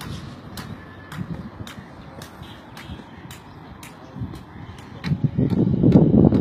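Sharp clicks repeating about twice a second over a low outdoor rumble, then a louder rough noise coming in about five seconds in.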